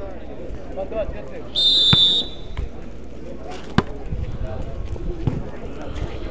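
A referee's whistle blows once, a steady shrill tone about half a second long, signalling the serve. A sharp smack of a hand striking the ball comes a couple of seconds later, over a low murmur of spectators' voices.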